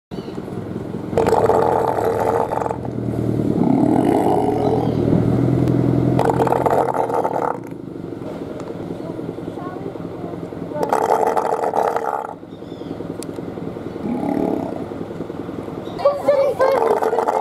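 Two South American sea lions calling together. One gives three loud, harsh roars of about a second and a half each, some four to five seconds apart. A deeper, pitched, drawn-out call runs between the first two roars, and a shorter one comes near the end.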